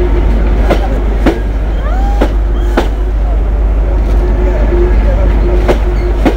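Passenger train coaches passing close at speed: a loud steady rumble with a steady hum, and sharp clicks in pairs about half a second apart as the wheelsets cross rail joints.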